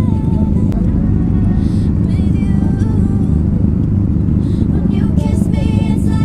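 Several motorcycle engines idling together close to the microphone, a steady low rumble.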